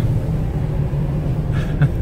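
Chevrolet Corvair's rear-mounted, air-cooled flat-six engine running under way, a steady low rumble heard from inside the cabin, with a short knock near the end.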